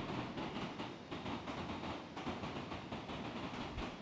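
Faint, steady background rumble and hiss: room tone during a pause in speech.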